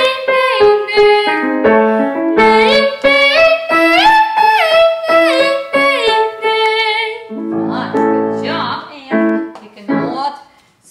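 A girl sings a vocal warm-up exercise in short phrases that slide up and back down, accompanied by grand piano chords. About seven seconds in the singing stops, the piano holds a low chord, and there are a few brief vocal sounds.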